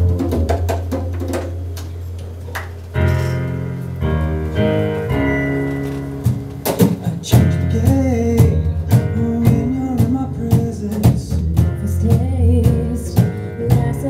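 A live band starting a song: sustained low bass and keyboard notes begin at once, chords enter about three seconds in, the drum kit comes in around six and a half seconds, and a woman's lead vocal begins near eight seconds.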